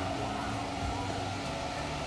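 Steady background hum and hiss with a low rumble, unchanging throughout.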